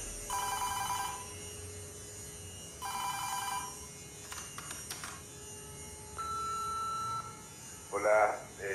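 A telephone rings twice, each ring about a second long. A few clicks follow, then a single steady beep lasting about a second.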